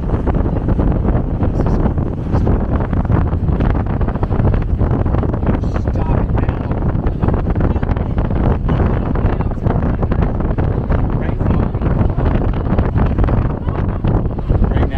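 Wind buffeting the microphone through the open window of a moving vehicle: a loud, steady low rumble.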